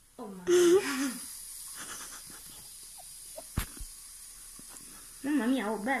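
Aerosol can of shaving foam spraying foam into a plastic bowl, a steady hiss that runs for several seconds. A short vocal sound comes near the start, a single sharp click falls in the middle, and speech starts near the end.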